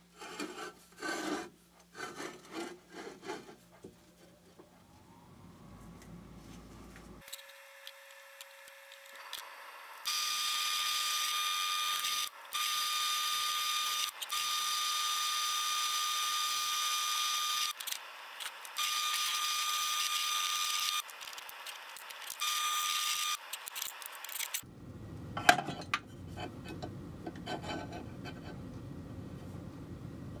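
Drill press bit cutting into an aluminum handle for a set-screw hole, with a steady whine, in five pushes separated by brief pauses, from about ten seconds in to near the end. Clicks and clatter of the part and vise being handled come before and after.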